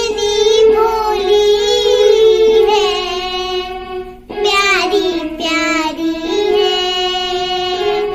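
A young girl singing a song, in two long phrases with held, wavering notes and a brief break for breath about four seconds in.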